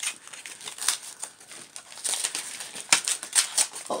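Paper rustling and crinkling in an irregular run of sharp crackles as a card envelope sealed with washi tape is pulled open and torn by hand.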